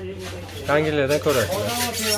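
A man's voice briefly, then a rubbing, brushing noise in the second half as a hand handles the equipment close to the microphone.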